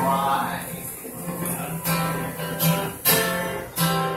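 Acoustic guitar strummed in a steady rhythm, chords struck about every two-thirds of a second.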